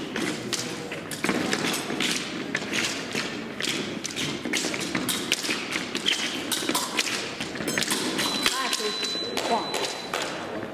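Épée fencers' footwork on the piste, a run of irregular thumps, stamps and taps from advancing and retreating steps. About eight seconds in, a steady high electronic beep from the scoring machine begins, signalling a registered touch.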